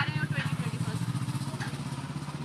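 A motor vehicle engine running steadily with a low, even pulsing, easing off slightly towards the end.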